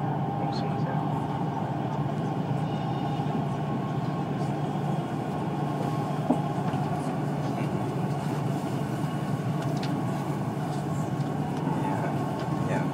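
Dubai Metro train running between stations, heard from inside the car: a steady rumble and hum with a faint steady high tone, and a single click about six seconds in.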